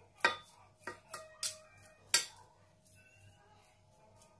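Metal spoon clinking and scraping against a stainless steel mixing bowl as mashed soybeans are stirred with salt. About five separate clinks come in the first half, the loudest one just after two seconds in.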